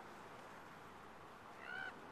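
A common raven gives one short pitched call near the end, over a steady low hiss of outdoor background noise.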